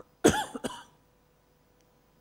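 A woman coughs twice in quick succession: a loud cough about a quarter second in, then a shorter one right after.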